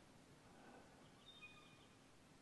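Near silence, with a faint, short bird call or two at a high pitch around the middle.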